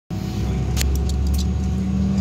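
Steady low hum with a faint steady whine of an Embraer E-175 airliner heard inside the passenger cabin. A few light clicks and rattles come about a second in.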